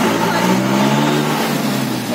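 Car engine running, heard from inside the cabin, its pitch easing slightly lower over the first second and a half.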